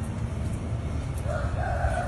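A rooster crowing once, a held call starting a little past halfway, over a low steady rumble.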